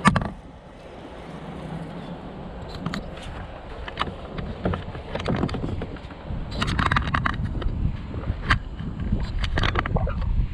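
Kayak being paddled: irregular splashes and drips of water off the paddle blades, with a low wind rumble on the microphone. A single sharp knock comes right at the start.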